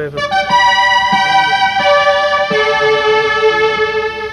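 Elka Synthex polyphonic synthesizer playing a fanfare of sustained chords, the chord changing a few times and a lower note entering past halfway. It is played as a stand-in for the Yamaha GX-1's fanfare sound.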